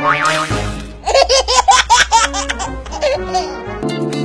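Laughter, a quick run of rising-and-falling 'ha' notes lasting about a second and a half, laid over background music, with a short noisy burst just before it near the start.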